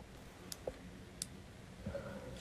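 Faint background hiss with two brief, sharp clicks, about half a second and just over a second in.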